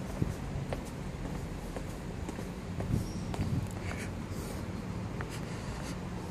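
Quiet outdoor ambience: a steady low hum with a few soft knocks and scattered faint clicks.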